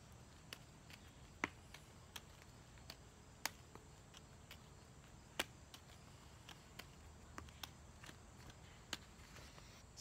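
Juggling balls landing in the hands: soft, irregular slaps and clicks as each catch is made, some louder than others, over a faint quiet background.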